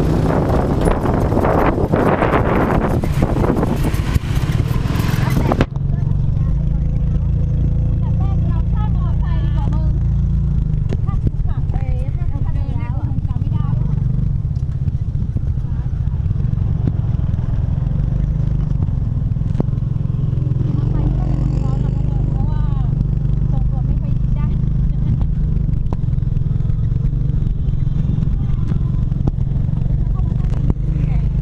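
Motor scooter pulling a sidecar, its engine running in a steady low drone while riding along, with wind rushing over the microphone for the first five seconds or so until it cuts off abruptly. Faint voices come and go in the background.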